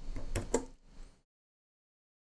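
A few light computer keyboard keystrokes, with two sharper clicks about half a second in, over faint room noise.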